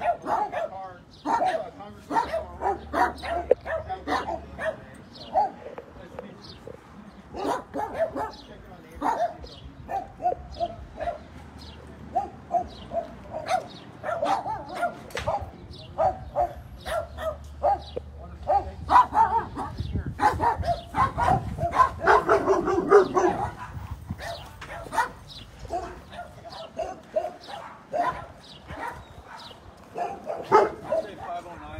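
Dogs barking over and over in short bursts, loudest about two-thirds of the way through.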